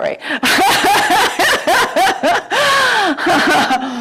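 A woman laughing, in a run of short bursts with one longer drawn-out laugh past the middle.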